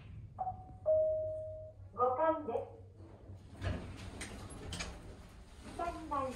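Mitsubishi ACCEL elevator's arrival signal: a brief higher chime tone, then a longer lower one, followed by a short recorded voice announcement. The car doors then slide open, and another brief announcement starts near the end.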